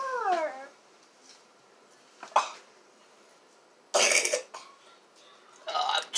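Mostly a quiet room with a few short sounds: a person's voice gliding down in pitch at the start, a single sharp tap about two seconds in, and a short rough burst like a cough about four seconds in. Speech starts again near the end.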